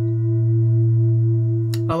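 A low, steady meditation hum at one unchanging pitch, like a sustained "om", that ends abruptly near the end.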